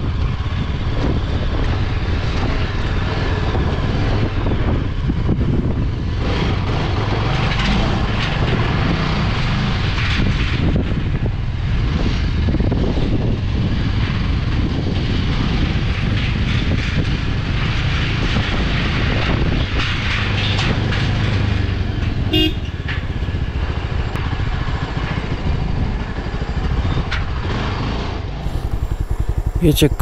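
Yezdi Scrambler's single-cylinder engine running steadily on the move, with wind rushing over the microphone. A single short horn toot comes about two-thirds of the way through.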